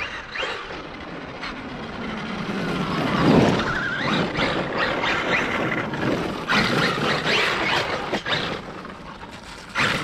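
Electric brushless motor of a Traxxas Maxx RC monster truck whining as it drives at speed on wet pavement, with tyre noise. The motor whine rises and falls, loudest about three seconds in, and a brief sharp knock comes near the end.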